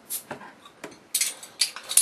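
Short crinkling scrapes and clicks of a beer bottle's foil-covered top being worked open by hand, several brief bursts with the loudest a little over a second in.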